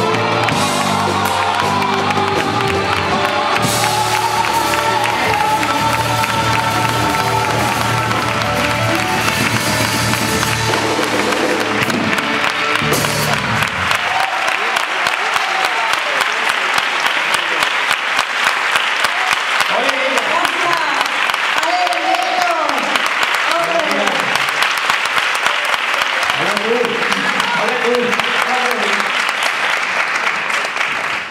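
A male and a female singer with a live band finish a copla duet, the music ending about 13 seconds in. Then an audience applauds, with voices calling out over the clapping.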